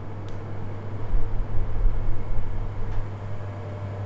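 Steady low electrical hum with a low rumble of background noise, stronger in the first three seconds; the tablet makes no sound of its own as it powers on.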